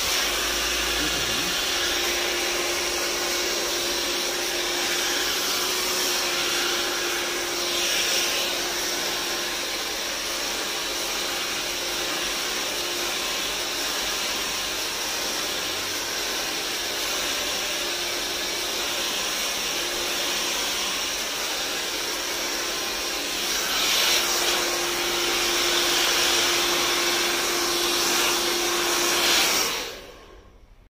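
Handheld hair dryer blowing steadily, with a low motor hum under the rush of air. It grows louder for a few seconds near the end, then cuts off suddenly.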